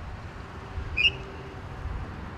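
Low, steady rumble of a golf cart driving slowly over grass, mixed with outdoor wind and traffic noise, with a faint hum. One short, high-pitched chirp about a second in.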